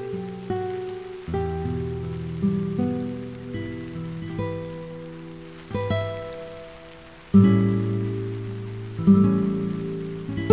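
Steady rain falling on a garden and pavement, under slow music of single plucked notes that each start sharply and ring out, with stronger notes coming in about seven and nine seconds in.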